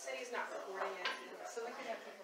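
Indistinct voices of people talking in a room, with some clinking of tableware.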